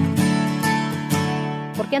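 Background music: strummed acoustic guitar chords, with a woman's voice starting just at the end.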